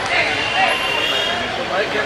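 Crowd of spectators talking and shouting over one another around a football match.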